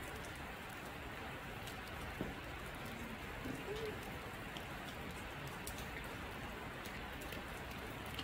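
Steady rain from a heavy storm falling on a sheet-metal gazebo roof, an even patter with scattered sharp drop clicks.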